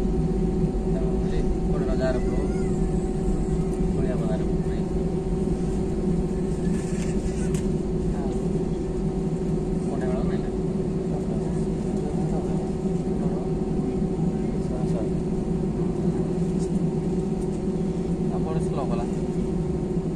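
Inside a jet airliner's cabin during taxi: the engines give a steady drone with a held tone, with faint passenger voices.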